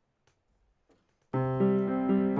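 Near silence, then about a second in an upright piano starts a piece, striking a chord over a low bass note and playing on with a second chord soon after.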